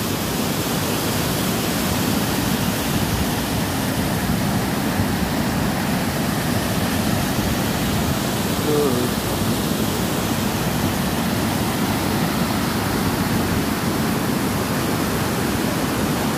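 Steady rushing of a waterfall, with white water spilling down rock ledges into a pool.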